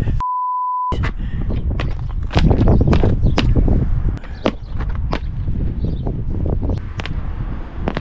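A short steady electronic bleep near the start, with the sound cut to silence around it, the kind dubbed in to censor a word. Then wind buffets the microphone, with scattered sharp clicks as football boots are pulled on and their studs tap on concrete.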